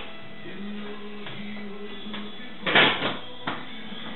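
Background music with steady held tones, broken about three quarters of the way in by a loud clank and a smaller knock half a second later. The clank and knock come from the aluminum welder cart, its casters coming down on the concrete floor.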